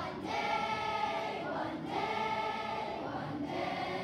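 Children's choir singing together in long held phrases, with brief breaths between phrases about halfway through and again near the end.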